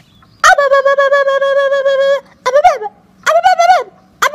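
A voice wailing: one long held cry with a quick pulsing tremble, then two shorter cries that fall in pitch at the end.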